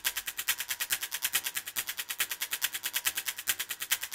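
Fast, even, high ticking, about a dozen ticks a second, laid on as the teaser's soundtrack.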